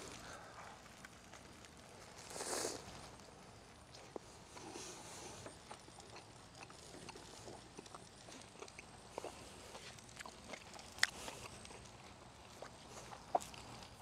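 Quiet mouth sounds of a man biting into and chewing a juicy burger, close to a lapel microphone. There is a brief breathy swell about two and a half seconds in, then a few scattered small clicks.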